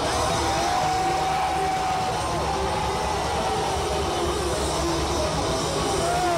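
Live hard-rock band heard from the arena audience: an electric guitar holds a long note that glides in pitch at its start and end, over a dense, steady low rumble of drums and bass.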